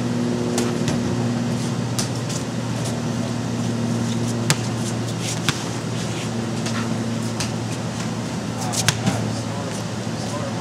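Steady electric blower hum keeping an inflatable basketball toss game inflated, with a few sharp knocks as basketballs strike the inflatable hoops and backboard.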